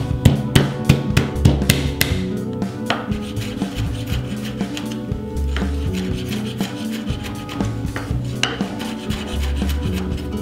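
Chef's knife mincing garlic on a wooden cutting board: quick, repeated taps of the blade against the wood, busiest in the first few seconds. Background music plays throughout.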